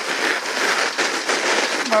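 Sled runners scraping and hissing over packed snow at speed: a steady gritty rush with small irregular knocks.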